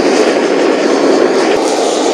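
Handheld kitchen blowtorch burning with a loud, steady rush of flame, held over grated Parmesan on bread to brown and melt it.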